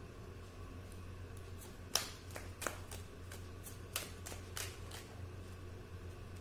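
A deck of cards being shuffled by hand: a quick, irregular run of sharp card snaps and clicks starting about two seconds in and dying away shortly before the end, the first snap the loudest.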